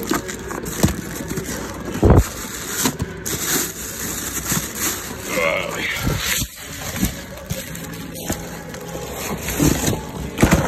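Cardboard box being pulled and torn open by hand, with rustling, scraping and scattered knocks, and one heavy thump about two seconds in.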